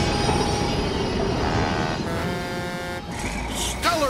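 Cartoon train sound effect of locomotives rolling along the rails: a steady rushing rumble, with a held multi-note tone in the middle.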